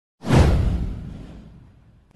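Intro whoosh sound effect that starts abruptly about a quarter-second in, sweeps downward in pitch over a deep boom, and fades away over about a second and a half.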